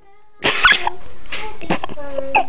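A person coughing close to the microphone: a loud rough cough about half a second in, followed by two shorter ones. Before the coughs a child is singing faintly.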